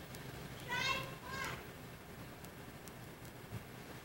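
A child's voice gives two short high-pitched calls about a second in, faint under a steady background hiss.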